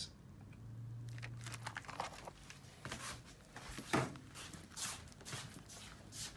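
Faint rustling and light knocks of a plastic-film-covered frozen dinner tray being picked up and handled, with one sharper knock about four seconds in. A brief low hum sounds near the start.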